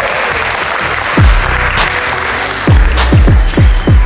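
A group clapping and cheering at the start. Beat-driven music then takes over, with deep bass hits that drop in pitch, one about a second in and a quick run of them near the end, over sharp high percussion ticks.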